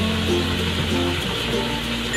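Background music playing over the steady hiss of a faucet running into a sink.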